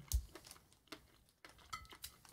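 Soft mouth sounds of chewing a piece of white chocolate bar studded with crunchy sprinkles: scattered small wet clicks and smacks, with a soft low thump just after the start.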